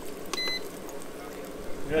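A single short electronic beep from a portable induction cooktop's control panel, about a third of a second in, as its setting is pushed up.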